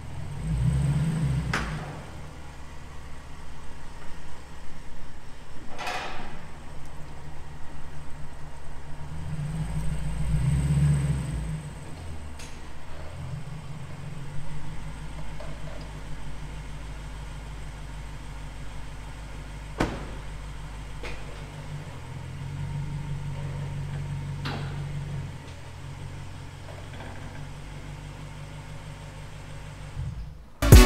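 Lexus GS F's 5.0-litre V8 idling through a JoeZ cat-back exhaust, a low steady rumble that swells twice, near the start and about ten seconds in. A few sharp clanks sound over it.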